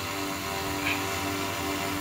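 H4 900 quadcopter hovering in loiter mode, its four motors and propellers giving a steady hum of several tones over a faint hiss.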